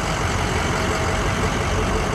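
Ford 6.0 L Power Stroke turbo-diesel V8 idling steadily, heard near its exhaust outlet.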